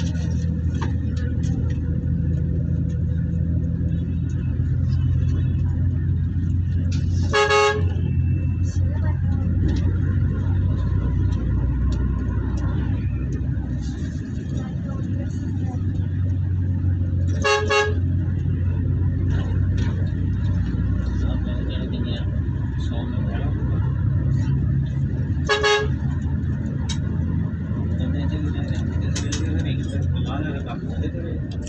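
Steady low rumble of engine and road noise heard from a moving vehicle, with a vehicle horn blown briefly three times, about 7, 17 and 25 seconds in.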